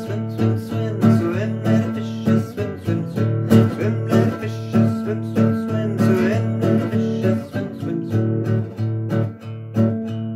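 Classical cutaway acoustic guitar strummed in a steady rhythm, an instrumental passage between verses of a sung children's action song.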